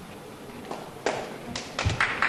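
Scattered hand claps starting about a second in, a few separate claps and a low thud: the start of audience applause.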